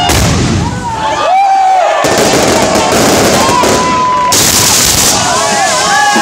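Correfoc pyrotechnics going off at close range: a dense, continuous crackle of firecrackers and spark fountains, with short whistling glides over it.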